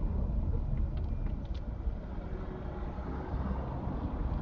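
Low, steady rumble of a car rolling slowly in traffic, heard from inside the cabin.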